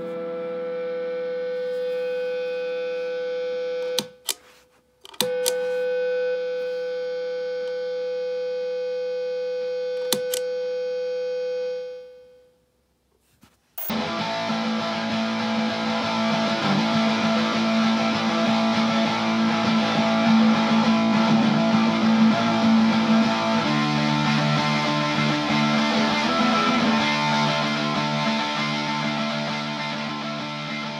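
Electric guitar feedback through a Stone Deaf Fig Fumb fuzz pedal, a steady sustained tone. It cuts to silence with a click about four seconds in and comes back with a click a second later, then dies away to silence around twelve seconds in as the pedal's noise gate is switched in. A loud, fuzz-distorted electric guitar loop then plays, its tone changing as the pedal's knobs are turned.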